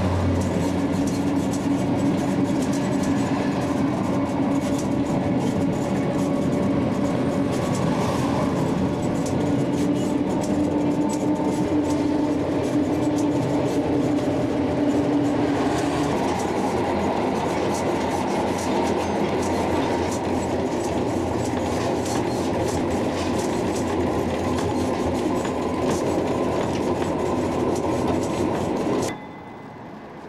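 Interior of a 1913 Oslo tram car running on rails: steady rolling rumble and rattle with a steady hum that stops about halfway through. The sound drops off abruptly about a second before the end.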